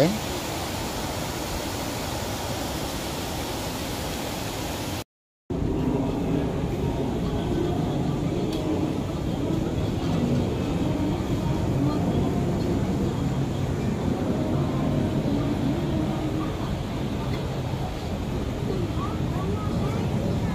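Steady outdoor noise. It breaks off in a brief cut about five seconds in, then carries on with faint, indistinct voices in the background.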